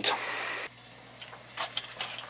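A brief rustling hiss for about half a second, then a few faint clicks and taps: handling noise from a gloved hand on a copper pipe and the camera being moved.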